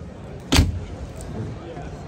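A boat's compartment door shut with a single sharp thump about half a second in, followed by a few lighter knocks.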